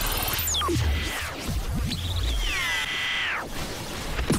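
TV station ident jingle: electronic sound effects over a low bass. A sharp falling swoop comes about half a second in, followed by sliding electronic tones.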